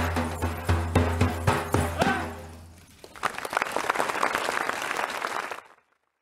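A frame drum (daf) struck in a fast, even beat over a low steady drone, the music ending about two seconds in and dying away. Then audience applause, which cuts off suddenly just before the end.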